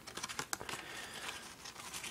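A paper CD booklet and a folded paper insert being handled against a CD case: light paper rustling with a run of small clicks and taps, one sharper click about half a second in.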